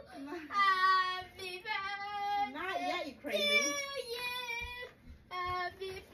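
A young girl singing in a child's high voice, a string of phrases with long held notes that slide and waver in pitch.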